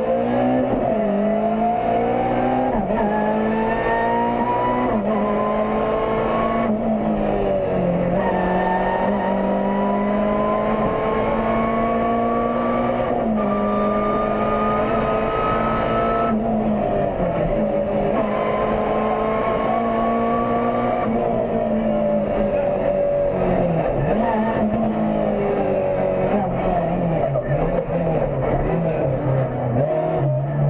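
Renault Clio Sport rally car's engine heard from inside the cabin under hard acceleration, its pitch climbing through each gear and dropping at quick upshifts about every three to five seconds. Past the middle the revs fall away as the car slows and downshifts, then rise and fall unevenly near the end.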